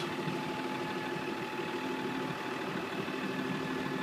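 New Holland LW110 wheel loader's diesel engine idling steadily.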